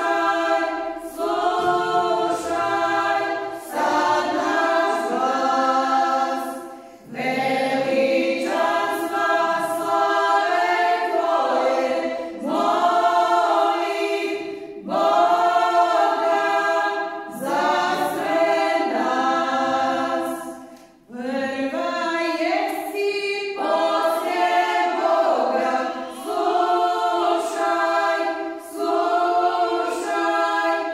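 Women's folk singing group singing a church hymn a cappella: several female voices together in long sung phrases, with short pauses for breath between them.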